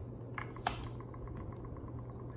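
Tarot cards handled over a glass tabletop: two sharp clicks as a card is drawn, then a run of quick light ticks, about ten a second, as the fingers work the deck.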